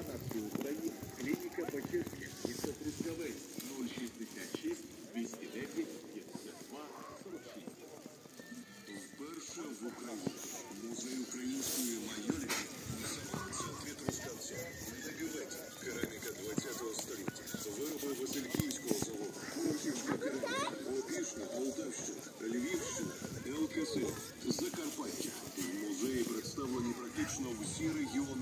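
Indistinct voices with music playing in the background.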